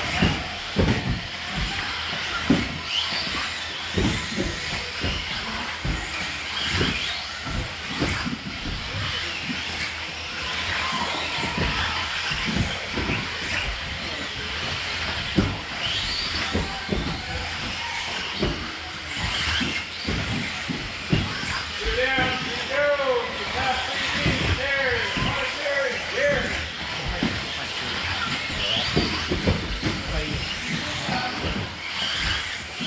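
1/10-scale 2WD electric RC buggies with 17.5-turn brushless motors racing on an indoor carpet track: motors and tyres running, with frequent sharp knocks from landings and crashes on the jumps.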